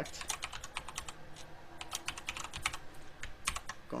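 Computer keyboard typing: irregular runs of quick key clicks with short pauses between them.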